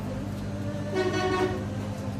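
Steady hum of a hot-air rework station blowing on a phone circuit board. About a second in, a horn toots once at a single steady pitch for about half a second, the loudest sound here.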